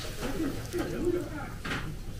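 Indistinct low voices murmuring, with no clear words, and a short hiss-like noise near the end.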